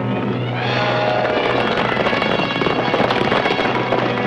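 Background music swelling over the dense rumble and clatter of a band of horses galloping.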